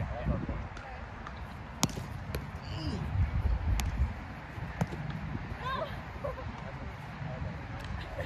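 Sharp slaps of a roundnet (Spikeball) ball being hit by hand and bouncing off the net in a rally: four short hits spread over about three seconds, over a low rumble.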